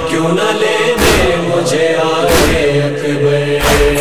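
Noha lament chorus chanting a drawn-out refrain in long held notes, over a percussive beat that strikes about every 1.3 seconds.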